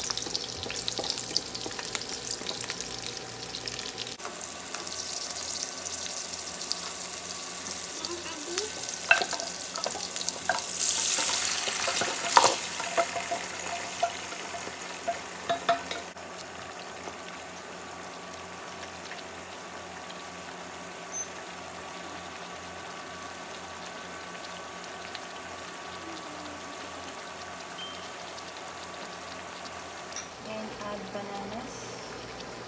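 Garlic and onion sizzling in hot oil in a wok while a wooden spatula stirs and knocks against the pan. About ten seconds in the sizzling surges louder with several sharp knocks. After about sixteen seconds it settles to a quieter, steady hiss.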